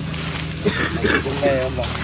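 Macaque calling: a few short calls around the middle, the last ones wavering up and down in pitch, over a steady low hum.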